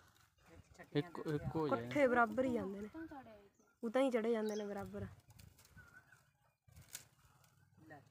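Mainly speech: a voice talking in two stretches, with quieter gaps between and after them.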